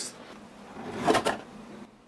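Cardboard router box being opened by hand: a rubbing scrape of cardboard on cardboard that swells to a peak just over a second in, then dies away.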